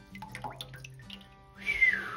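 A person's single breathy whistle, falling in pitch, near the end: an admiring reaction to a freshly cut agate slab. Faint background music and a few small clicks come before it.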